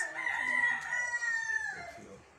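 A rooster crowing: one long call that drops in pitch near its end.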